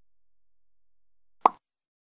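A single short pop sound effect about one and a half seconds in, over otherwise near silence.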